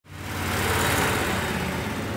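Heavy truck engine running, swelling over the first second and then settling to a steady low sound.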